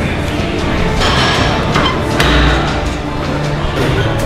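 Background music, with a rushing swell about a second in that ends in a low thud a little after two seconds.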